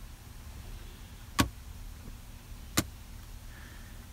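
Two sharp clicks about a second and a half apart as the rear centre console's lid and armrest are handled, over a faint low steady hum.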